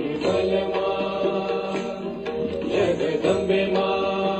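Devotional Indian music: a chanted mantra sung over a steady held drone, with a few light percussion strokes.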